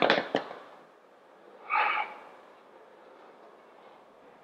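A quick run of sharp clacks from the cable machine as the handles are pulled up into position, then a short, forceful exhale through the mouth about two seconds in.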